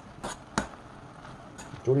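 A metal spoon clicking and scraping against a pot while stirring soybeans simmering down in a soy-sauce glaze. There are a few light knocks, the loudest a little over half a second in.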